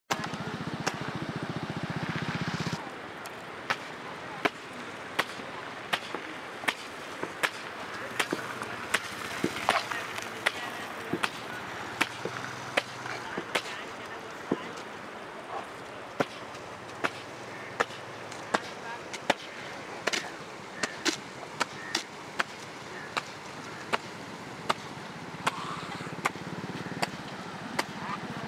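Kitchen knife cutting raw chicken on a plastic cutting board: sharp knocks of the blade hitting the board at a steady pace, about three every two seconds, over a background hiss. The first few seconds also carry a louder low hum.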